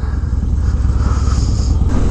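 Harley-Davidson Dyna's V-twin engine running steadily under way, a continuous low drone.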